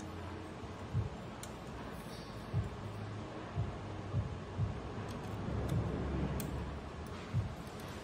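Hands handling and driving screws into the sheet-metal chassis of a disassembled HP TouchSmart 300 all-in-one computer: about six dull thuds and knocks with a few faint light clicks, and a stretch of low rubbing rumble a little past the middle.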